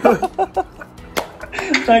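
Men laughing, a quick run of short 'ha-ha' pulses at the start, then a single sharp click a little past a second in.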